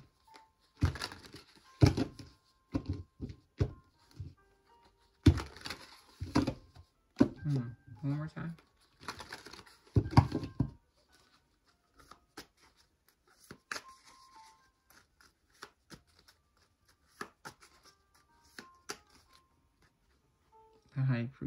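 A tarot deck being shuffled by hand: repeated papery bursts of cards over about the first ten seconds, then only occasional light card clicks.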